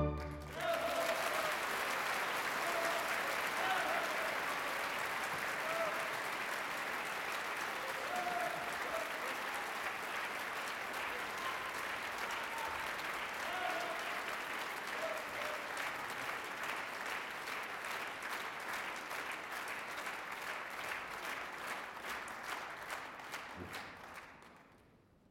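An orchestra's last chord ends right at the start, then a large theatre audience applauds. The applause slowly grows quieter and breaks off abruptly just before the end.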